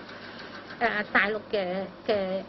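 A woman speaking into press microphones, starting after a short pause of under a second.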